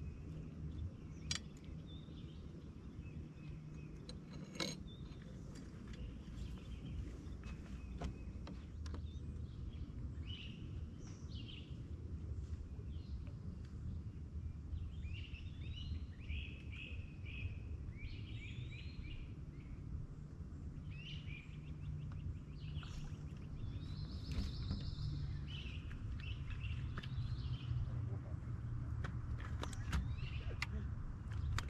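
Songbirds singing in several short phrases of quick repeated chirps, over a steady low outdoor rumble, with a few sharp clicks in the first several seconds.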